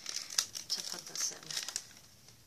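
Crinkly packaging being handled: a run of irregular crackles and rustles.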